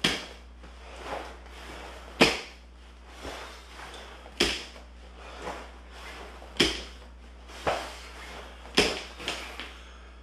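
Heavy punching bag hoisted from a wooden floor to the shoulder and set back down over and over, a sharp thud about every two seconds with lighter knocks in between.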